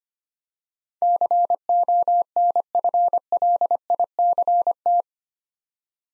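Morse code at 25 words per minute: a steady tone of about 700 Hz keyed into dots and dashes, starting about a second in and stopping about a second before the end. It sends the word 'conflict', which is spoken right after.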